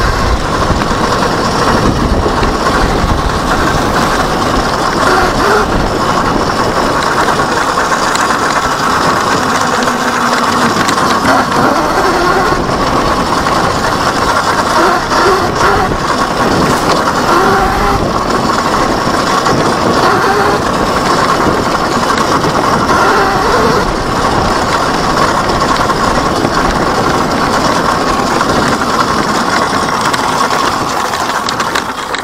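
Electric dirt bike ridden at speed over a rough dirt trail: a steady, loud rush of wind and tyre noise on the rider-worn microphone, with constant rattling and knocks from the bike over the bumps and a wavering whine that rises and falls with the throttle.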